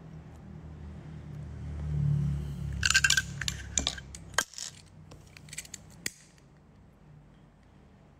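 Small hard objects clinking and rattling together on a tabletop. A dense burst of ringing clinks comes about three seconds in, followed by scattered single taps and clicks, over a low rumble of handling that stops sharply about four seconds in.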